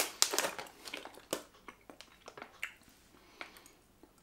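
Plastic gummy-candy bag crinkling and crackling as a hand rummages inside it; the crackles are dense for about two seconds, then thin out to a few scattered ones.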